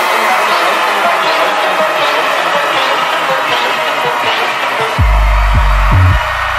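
Electronic film score: a dense mid-range passage with the bass dropped out, then deep, heavy bass hits return about five seconds in.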